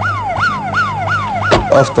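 Emergency vehicle siren in a fast yelp, each wail jumping up quickly and sliding back down, about three a second. A thump comes just before the end.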